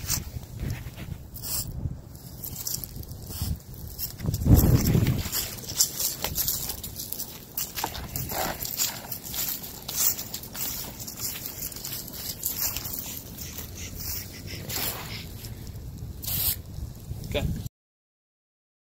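Footsteps and rustling on mulch, dry leaves and grass from a person walking with a backpack sprayer, in many short irregular crunches and clicks, with a louder low rumble about four and a half seconds in. The sound cuts off shortly before the end.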